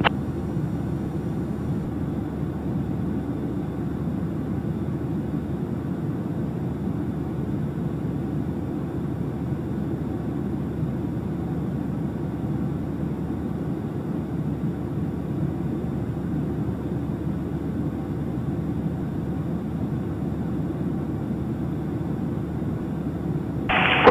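Cessna 172's piston engine and propeller running steadily at low power while taxiing: an even, unchanging low drone heard inside the cabin.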